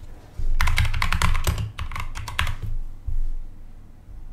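Typing on a computer keyboard: a quick run of keystrokes that starts about half a second in and lasts about two seconds, then one more keystroke a little after three seconds.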